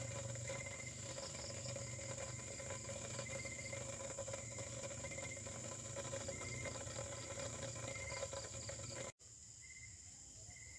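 Crickets chirping in short repeated bursts over a steady low hum and a faint high tone. The background drops suddenly quieter about nine seconds in, and the chirps go on faintly.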